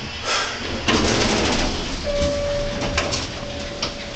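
Otis hydraulic passenger elevator's car doors sliding open on arrival. About halfway through, a steady single tone starts and holds for nearly two seconds.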